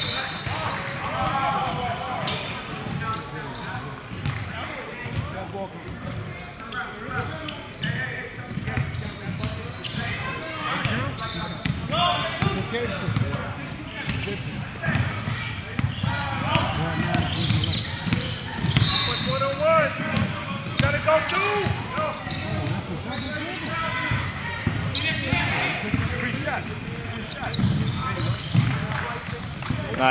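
Basketball bouncing on a hardwood gym floor during a game, with scattered voices of players and spectators echoing in the large hall.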